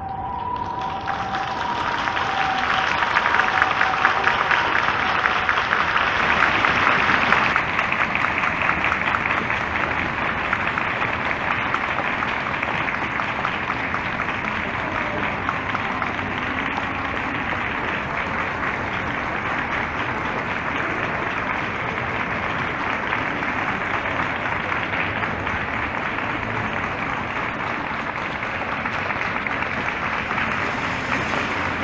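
A large crowd clapping steadily. The applause swells in the first couple of seconds and is loudest for the first seven or so, then settles into slightly quieter continuous clapping.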